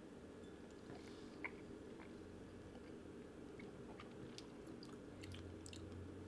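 Near-silent room with a low steady hum and faint, scattered small clicks of mouth sounds as two people sip whiskey and work it around in their mouths, one click a little louder about a second and a half in.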